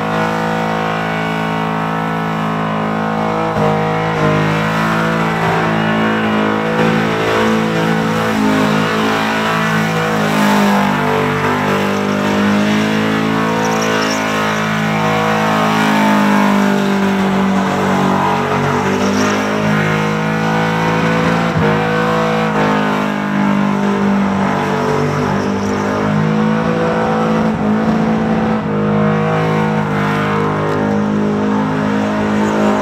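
Supercharged, methanol-fuelled engine of a Holden ute held at high revs through a sustained burnout, the rear tyres spinning. The revs waver up and down a little through the middle.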